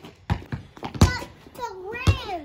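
Rubber basketball bouncing on a concrete driveway: a quick run of sharp thuds, the loudest about a second in, with a child's voice briefly near the end.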